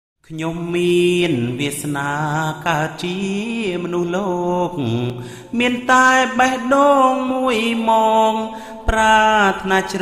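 A man singing a slow Khmer song, the melody moving in long held notes that bend and glide between pitches.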